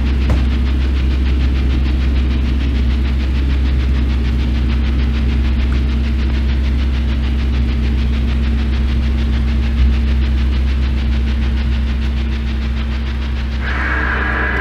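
A motor vehicle driving, its engine and road noise making a loud, steady low rumble with a constant hum.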